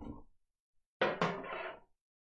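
A sudden clatter about a second in, lasting under a second, from the die-cutting plates and cut pieces being handled on the work table.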